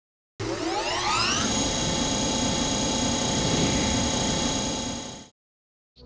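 A drill motor spinning up: a whine that rises in pitch for about a second, then holds steady over a hiss before fading out near the end.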